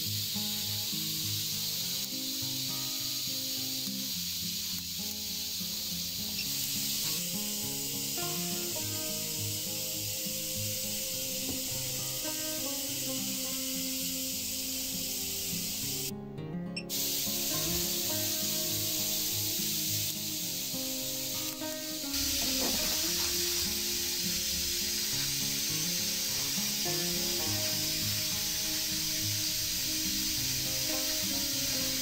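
Steady high-pitched hiss of corona discharge from a homemade high-voltage multistage ion thruster, under background music. The hiss drops out briefly about sixteen seconds in.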